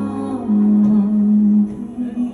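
A male singer holding a long, steady note over live backing music on stage, the pitch held level for over a second before breaking off near the end.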